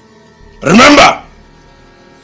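One loud, short vocal cry, about half a second long, with a pitch that rises and falls, coming about a second in over a faint, steady music drone.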